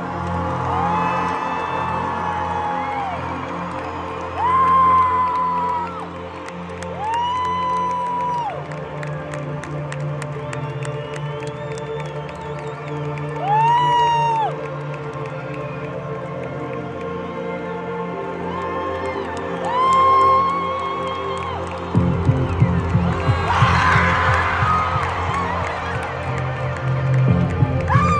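Live stadium concert: music with long held notes that swoop up, hold and fall away, over a large crowd cheering. A heavier beat comes in near the end.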